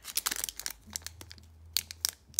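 Plastic wrapper around a pack of trading-card sleeves crinkling as it is picked up and handled, in irregular short crackles.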